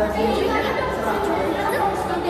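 Several voices chattering at once, overlapping so that no single speaker stands out.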